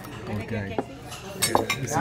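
Cutlery and dishes clinking on a table, with a few sharp clinks in the second half over voices.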